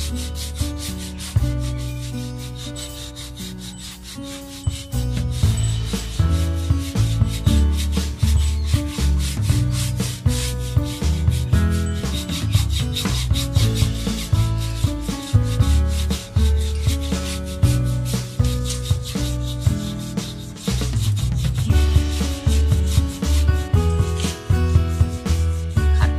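A stiff shoe brush scrubbing rapidly back and forth over a rubber tyre sidewall, buffing shoe polish into the rubber to bring up a black shine. Background music plays throughout.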